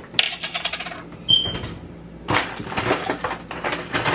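Clinks and knocks of kitchen containers and utensils being handled: a sharp knock just after the start, scattered clicks, then a denser run of clatter in the second half.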